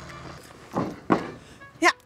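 Two quick noisy whooshes, a fraction of a second apart, the second one louder: an edited transition sound effect.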